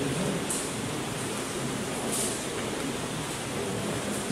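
Steady hiss of a large hall's background noise, with brief faint higher hisses about half a second and two seconds in.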